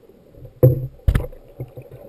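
Two loud, sharp underwater knocks about half a second apart, heard through a submerged camera, over a low wash of water.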